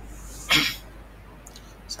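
A single short, loud cough from a man at a computer, about half a second in.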